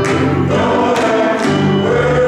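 A men's choir singing a gospel hymn in harmony, holding long chords.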